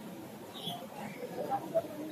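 Faint, indistinct chatter of people in the background, with a few brief high squeaks.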